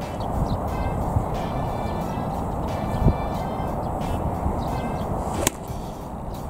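A sand wedge striking a golf ball about five and a half seconds in: a single sharp click over steady background noise.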